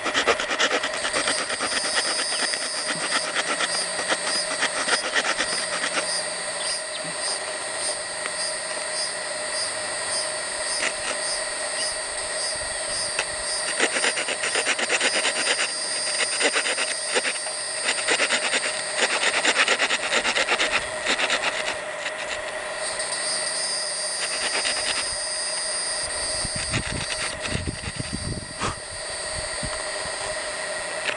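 Small saw blade of a Swiss Army knife sawing a V-notch into a willow fire-board: a long run of short, quick back-and-forth strokes. The notch is cut to the burn hole to collect the dust for a bow-drill ember.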